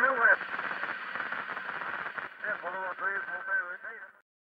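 A man's voice with a thin, radio-like sound, its highs cut off, going quieter after the first moment and stopping abruptly at the very end.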